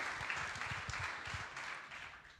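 Audience applauding, dying away near the end, with a few low thumps under it.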